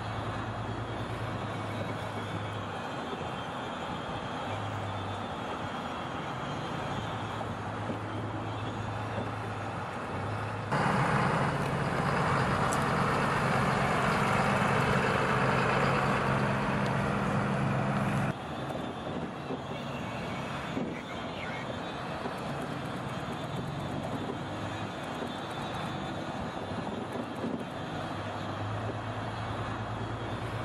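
Ram 2500 heavy-duty pickup truck driving on city streets: a steady low engine hum with tyre and road noise. A louder stretch in the middle starts and stops abruptly.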